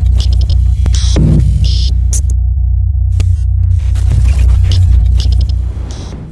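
Electronic outro sting: a loud, deep throbbing bass drone overlaid with glitchy static stutters and a falling sweep about a second in, fading out near the end.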